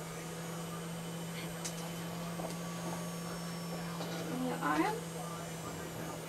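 A steady low hum, with one short wordless voice sound rising in pitch about four and a half seconds in.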